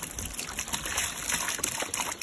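Water pouring in a stream from a plastic jug into the black plastic reservoir of a mosquito trap, splashing and trickling onto a shallow layer of water as it fills.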